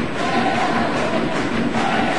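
Football stadium crowd chanting and singing together: a steady, dense mass of many voices with a few held notes.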